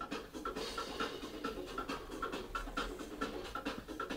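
Staffordshire bull terrier panting quietly and steadily close to the microphone, about four breaths a second.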